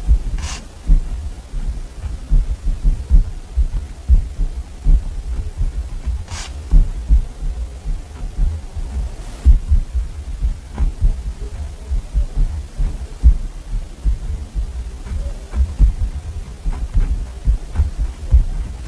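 Pen writing on a paper diary page on a wooden desk, heard close up: a busy, irregular run of soft low taps and scratches from the pen strokes, with a few brief higher swishes of paper and hand movement.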